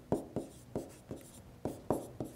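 A stylus writing on a tablet: a series of light, sharp taps and short scratches, about six strokes spread over two seconds.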